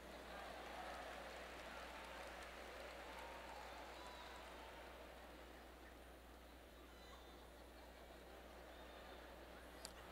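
Faint murmur of a large theatre audience over a low steady hum, easing off slightly after the first few seconds: a muted crowd response with little clapping.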